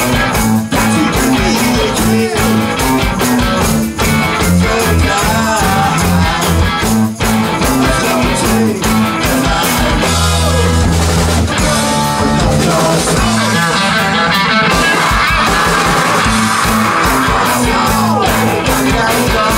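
Garage rock band playing live and loud: distorted electric guitars, bass and a drum kit, with singing at times.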